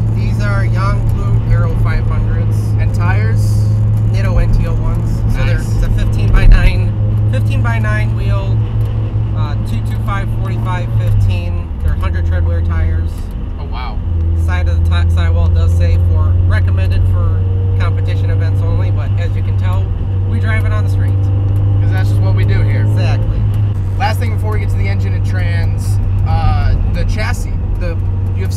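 Steady low drone of the turbocharged 1995 Mazda Miata's 1.8-litre four-cylinder and its road noise while cruising, with talking over it. The drone dips for a couple of seconds about eleven seconds in, then returns.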